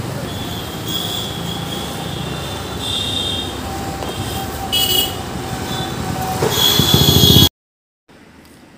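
Steady road traffic noise with a few short high tones. It swells near the end, then cuts off suddenly.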